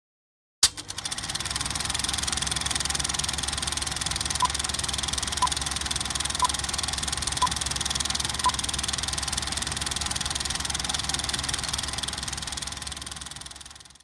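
Film projector running: a steady, fast mechanical clatter that starts suddenly with a click and fades out near the end. Five short beeps a second apart mark a film-leader countdown partway through.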